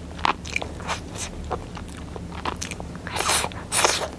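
Close-miked eating of soft, partly melted chocolate cake: wet chewing with a run of small mouth clicks and lip smacks, then a louder, wetter bite near the end.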